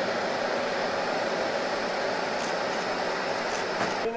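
Steady background noise, a constant hum with hiss, with a couple of faint clicks about halfway through and near the end.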